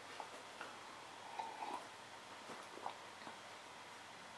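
Faint sipping of beer from a glass and swallowing, with a few soft clicks of the lips and mouth as it is tasted.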